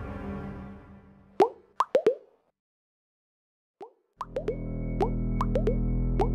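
Music fading out, then four quick cartoon plop sound effects with a rising pitch, standing in for popcorn kernels popping. After a short silence one more plop, then music comes in about four seconds in, with plops repeating along with it.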